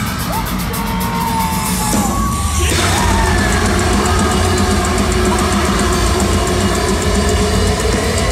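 Metalcore band playing live, heard from the crowd through a phone microphone in a large hall. A thinner passage with held melodic lines gives way about three seconds in to the full band, drums and guitars, playing loud.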